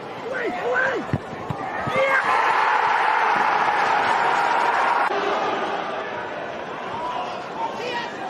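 Football match sound: shouting voices and two sharp thuds in the first two seconds, then crowd noise swelling loud for about three seconds and cutting off suddenly about five seconds in, leaving quieter background voices.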